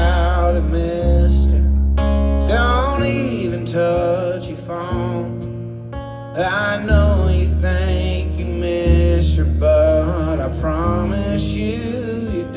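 Live acoustic country song: a strummed acoustic guitar with singing over it, heard through a concert PA.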